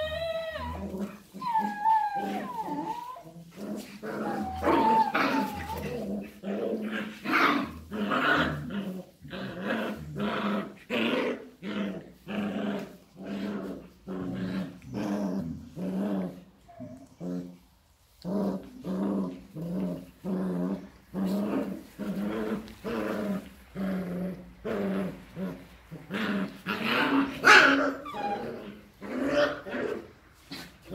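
Border collies play-fighting, growling in a rhythm of about two growls a second, with high whines in the first few seconds.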